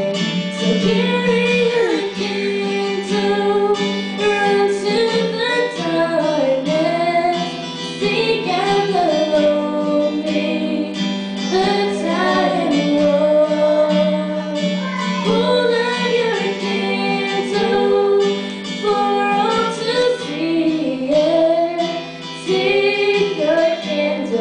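Two female voices singing a slow song into microphones, accompanied by a strummed acoustic guitar, heard through the room's small amplifiers.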